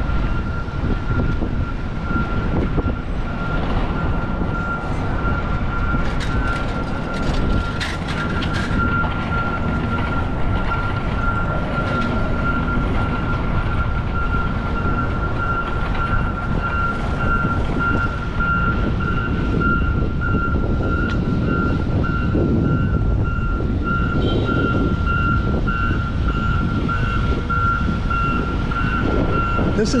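City street traffic noise with a steady high-pitched electronic beeping tone over it.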